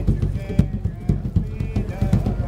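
Hand drum played with bare hands in a fast, busy rhythm of deep thumps and sharp slaps, with a man's voice singing over it.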